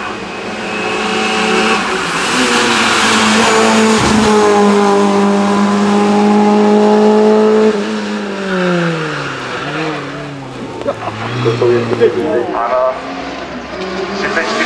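Racing car engine revving hard, held at steady high revs for several seconds, then its pitch falls away about eight seconds in.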